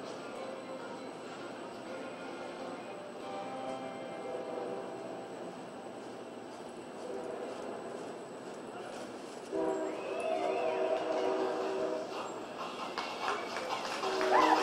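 Arena ambience with a murmur of voices, then about ten seconds in music starts with a loud sustained chord, turning into rhythmic music with sharp strikes near the end.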